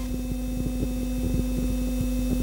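Steady electrical hum, a low buzz with a higher steady tone over it, crackling with small irregular clicks: the background hum and noise of an old analogue TV recording with no programme sound on it.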